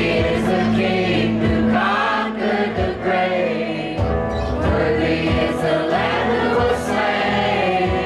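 Live contemporary worship music: a man and two women singing together into microphones over a strummed acoustic guitar.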